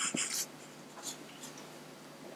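A brief scratchy rustle in the first half second, like paper being handled near the microphone, then faint room tone.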